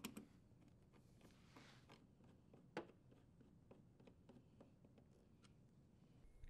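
Near silence with faint scattered ticks and one sharper click a little under three seconds in: a Phillips screwdriver turning the screw that holds the dishwasher's sheet-metal junction box cover.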